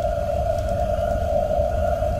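A single long note held steady in a film soundtrack, over a low rumble.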